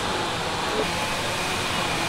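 Steady noise of a steel fabrication workshop: a continuous even hiss with a faint hum underneath.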